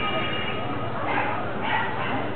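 Background voices and street noise with a dog barking twice, about a second in and again half a second later. A ringing bell tone fades out in the first half second.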